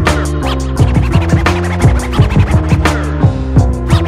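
Hip hop beat with turntable scratching: a looping bassline and drums, with quick back-and-forth scratches on a record cut in throughout.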